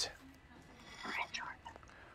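A faint, soft-spoken voice murmuring briefly about a second in, with quiet room tone around it.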